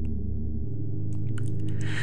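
Dark ambient background music: a low, steady sustained drone, with a few faint clicks about a second and a half in.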